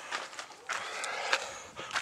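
Soft footsteps and scuffing on dry dirt ground, with a few light clicks.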